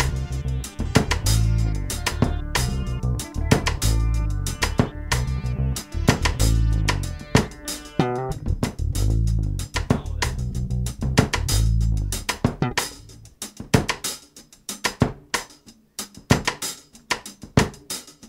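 Instrumental break of a rock-funk band song: bass guitar, drum kit and guitar playing a repeating groove. About twelve seconds in the bass drops out and only sparse drum hits carry on, quieter.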